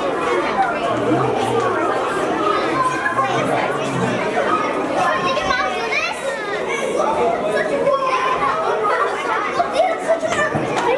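Many children's voices chattering at once as a group walks along a hallway, with some echo of the hall. A high voice calls out about halfway through.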